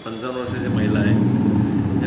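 A man talking, with a steady low rumble that sets in about half a second in and is louder than the voice.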